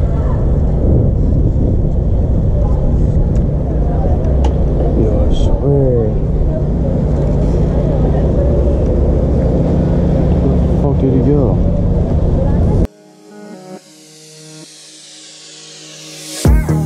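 Cruiser motorcycle engine running with a low rumble as the bike rolls slowly. About 13 seconds in it cuts off abruptly and music takes over.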